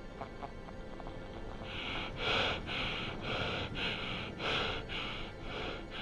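An astronaut breathing fast and hard inside a space helmet, in quick even breaths of about two a second that start about two seconds in, over a music bed. A few faint ticks come before the breathing.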